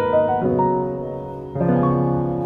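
Background piano music: gentle notes and chords, with a new chord struck about one and a half seconds in.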